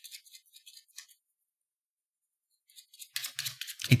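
Faint scratchy rustling and small clicks through about the first second, then near silence, then more faint clicks and rustling in the last second or so as a voice starts speaking.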